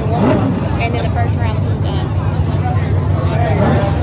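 Drag race cars idling at the starting line, a steady low rumble that neither rises nor falls, with people talking over it.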